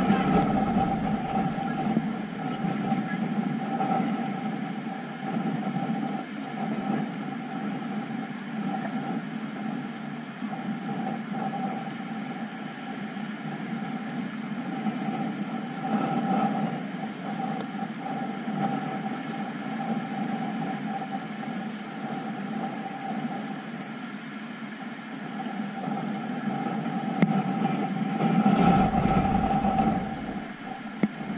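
Steady rushing of river rapids around a kayak running whitewater, swelling louder about halfway through and again near the end.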